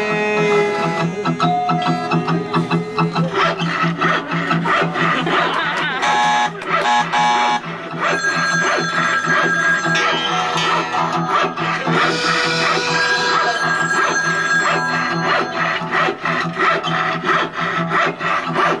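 Acoustic guitar strummed in a steady rhythm together with an accordion, playing an instrumental passage of a live song.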